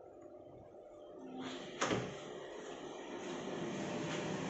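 A door being opened: a short rustle, then a single sharp click about two seconds in, followed by a steady hiss of room noise that grows toward the end.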